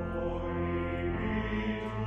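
Church choir with pipe organ: a full organ chord with deep pedal bass under low voices singing slow, held notes, changing pitch a couple of times.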